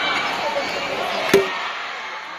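A badminton racket strikes a shuttlecock once, a sharp crack about a second in, over the steady chatter and calls of an arena crowd.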